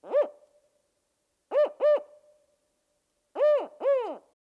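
Spotted owl hooting: a single hoot, then a pair of hoots about a second and a half in, then another pair near the end, each note rising and then falling in pitch.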